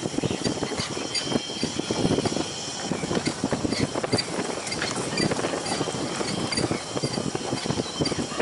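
A vehicle rattling and bumping along a rough dirt road, with irregular knocks and clatter over a steady running noise.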